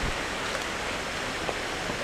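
Steady rush of flowing river water, with a couple of faint footsteps on a dirt path.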